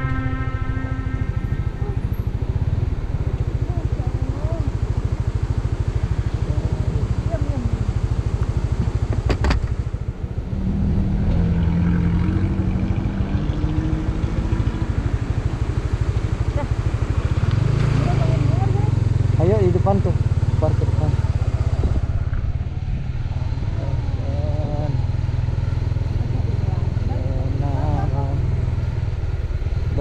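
Honda CB150X motorcycle's single-cylinder engine running under way, a steady low drone mixed with wind rumble on the microphone. The engine sound dips briefly about ten seconds in and comes back up a few seconds later.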